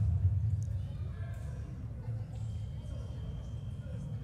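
Fencing-hall ambience: a steady low rumble with faint background voices and a few light clicks.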